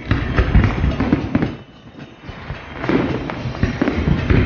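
Fireworks display: a rapid run of aerial shell booms and crackling bursts, easing off briefly about two seconds in before the bursts pick up again.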